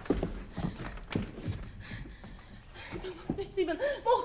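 Irregular thumps and scuffs of bodies and feet on a wooden stage floor during a struggle, knocking unevenly through the first couple of seconds. A woman's voice starts in near the end.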